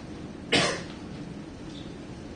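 A single sharp cough about half a second in, over a faint steady room hum.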